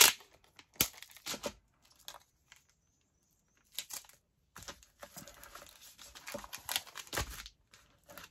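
Packing tape pulled off its roll and pressed down onto a paper hinge, with crinkling of the plastic sheet underneath. A few small taps and clicks come first, then a longer stretch of rasping and crinkling in the second half, with a low thump near the end.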